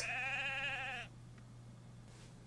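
A sheep bleating once: a single quavering call about a second long.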